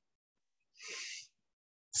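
A single short, faint breath by the meditation teacher, about half a second long, a second in, out of dead silence.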